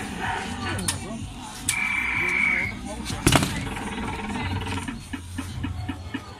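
Comboboxer Double Combat boxing arcade machine taking a punch: a steady electronic beep lasts about a second, then one hard smack of a fist on the padded ball a little over three seconds in.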